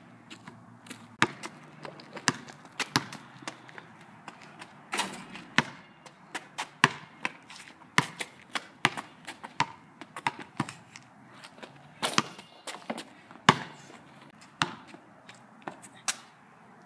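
A basketball bouncing on asphalt in repeated dribbles: sharp slaps, often several a second at an uneven pace.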